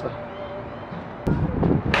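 A spear blade striking a dummy head target in a cutting test, a sharp impact just before the end after a moment of swinging movement.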